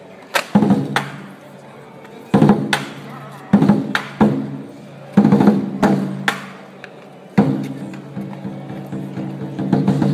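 Chinese lion dance percussion: a large drum with crashing cymbals, struck in short irregular groups of hits that ring on between them. About seven seconds in it becomes continuous playing.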